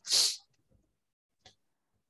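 A short, sharp breath-like burst of noise into a computer microphone, followed about a second later by a faint click.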